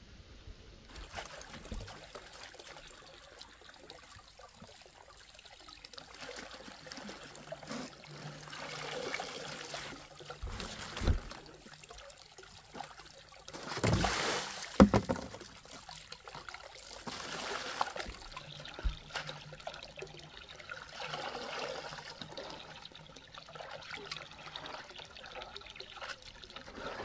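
Water trickling from a bamboo pipe into a plastic basin, with splashing as greens are washed by hand. About halfway through comes the loudest splash, as a basin of water is tipped out onto the ground.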